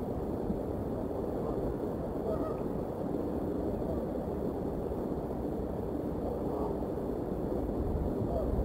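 Steady low outdoor rumble picked up by a nest-cam microphone, with a few faint, short bird calls scattered through it.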